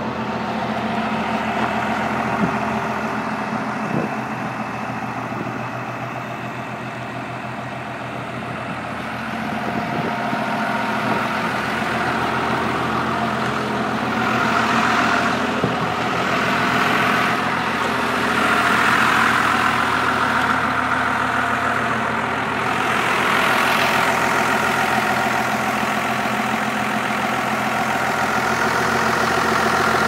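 12-valve Cummins inline-six diesel in a 1978 Chevy K60 idling steadily, getting somewhat louder for a stretch in the middle.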